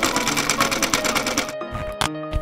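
Sewing machine stitching at speed, a rapid even clatter that stops about a second and a half in, over light background music.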